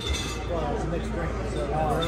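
Background chatter of restaurant diners over a steady low room hum, with a light clink of tableware.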